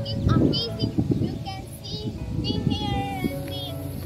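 Music with a young girl's singing voice, holding a long note about three seconds in.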